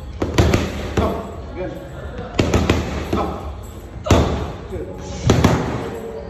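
Boxing gloves striking focus mitts in quick combinations: four flurries of two or three sharp smacks, each flurry about a second and a half after the last.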